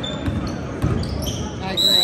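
Basketball being dribbled on a hardwood gym floor, a few separate bounces, with short high squeaks of sneakers on the court, loudest near the end.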